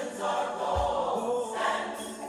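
A gospel choir song playing, with voices singing over the music.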